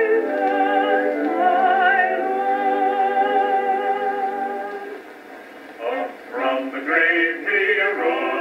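An early Edison phonograph record of a vocal quartet singing a hymn, heard through a phonograph. The voices hold chords with vibrato for about five seconds, dip briefly, then come back in a quicker word-by-word phrase. The sound is thin, with no deep bass and little treble.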